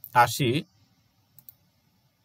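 A short spoken word, then two quick computer mouse clicks about a second and a half in.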